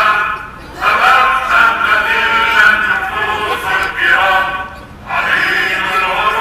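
Many voices singing together in chorus, a song sung in phrases, with two short breaks between phrases: one about half a second in and one just before the five-second mark.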